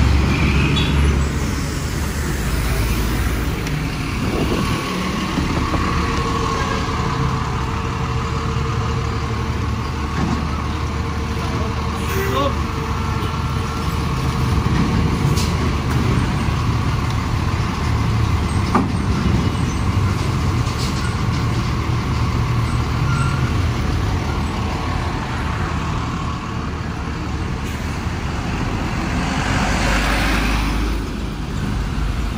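Steady engine rumble and road traffic noise heard from a vehicle moving through traffic, with trucks and cars passing.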